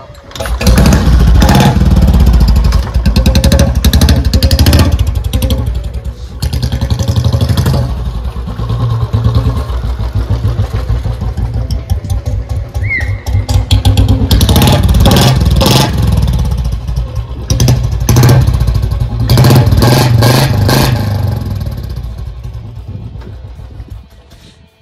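Royal Enfield Bullet 350 single-cylinder engine running, revved hard in several bursts with quieter stretches between as the bike is ridden along, fading near the end.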